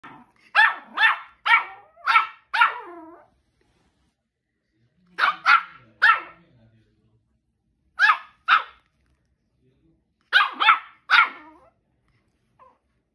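Two-month-old Shih Tzu puppy barking in short, high-pitched yaps: four bursts of two to five barks each, with pauses of a second or two between them.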